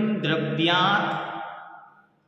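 A man chanting a Sanskrit sutra in a sing-song recitation, holding steady notes, his voice trailing away in the second half.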